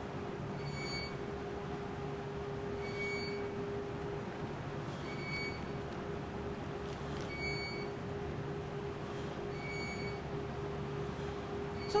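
Steady hum of lab test equipment running, with a faint short electronic beep repeating about every two seconds.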